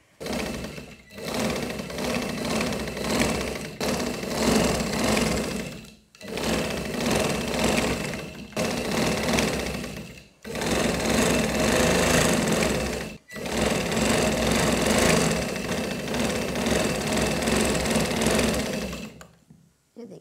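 Sewing machine stitching fabric in about six runs of one to six seconds each, with brief stops between them as the cloth is guided through.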